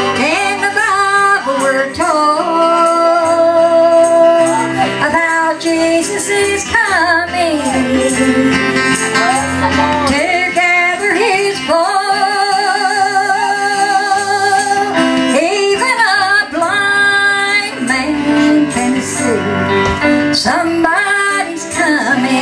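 A woman singing a slow gospel song into a handheld microphone with a wide vibrato, drawing out long notes and sliding between pitches, over a steady instrumental accompaniment.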